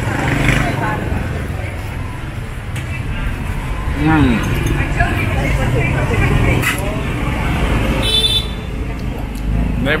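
Steady street traffic rumbling, with people talking close by and a short, high horn toot about eight seconds in.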